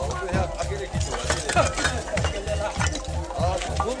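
Voices talking over music.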